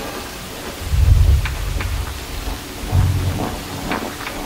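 Beatless break in an electronic dance mix: two deep rumbling swells, one about a second in and one about three seconds in, over a rain-like hiss with scattered ticks.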